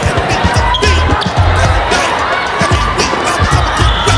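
Volleyball hall sound: balls striking and bouncing on the courts at irregular moments, over players' calls and shouting voices, with music mixed in.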